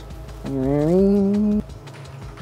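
A man humming a single note, rising at first and then held for about a second, over quiet background music.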